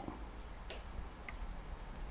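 Two faint clicks, about half a second apart, of a button being pressed on a timer controller's navigation wheel, over a low steady room hum.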